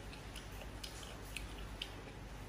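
Faint chewing of instant noodles with the mouth closed, with a few small wet mouth clicks about every half second.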